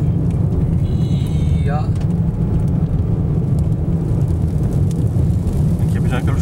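Steady low rumble of strong gusty outflow wind buffeting a moving car, mixed with road noise, heard from inside the cabin.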